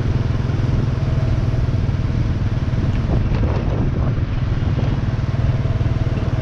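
Motorbike engine running steadily while riding along at a constant speed, a continuous low drone.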